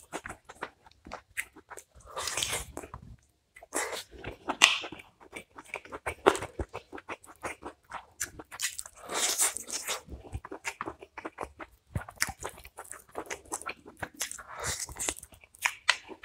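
Close-miked eating sounds of a man eating mutton curry and rice with his fingers: chewing and wet mouth smacks, with many short clicks and bursts as fingers work the food on a paper plate.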